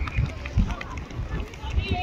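Outdoor shouting from players and spectators at a junior rugby match, with a high call near the end, over irregular low thumps on the microphone.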